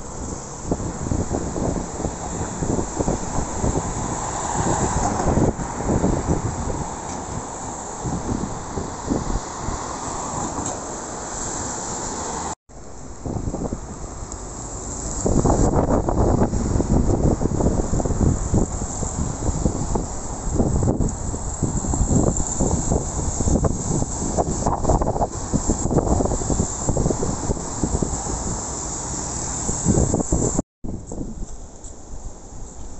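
Street traffic with wind buffeting the phone microphone, a gusty low rumble that rises and falls throughout.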